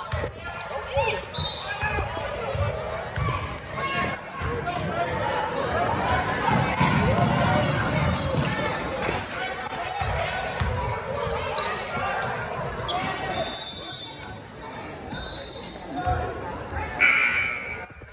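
Basketball dribbling on a hardwood gym floor amid spectators' voices, echoing in a large gym; near the end a referee's whistle blows once, briefly.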